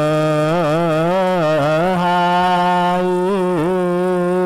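A man chanting one long held note of Ethiopian Orthodox liturgical chant. The pitch wavers in melismatic ornaments through the first two seconds and dips again about three and a half seconds in.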